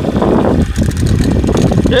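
Wind buffeting the microphone, an irregular low rumble, with indistinct voices mixed in.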